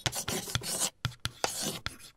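Chalk scratching on a blackboard as writing: a quick, irregular run of short scratchy strokes with a brief pause about a second in.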